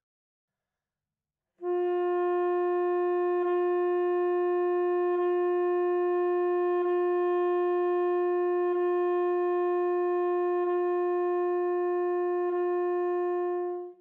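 Alto saxophone holding one long, steady note as a warm-up exercise, starting about a second and a half in. Six light, evenly spaced tongue strokes re-articulate the note without breaking the continuous airflow.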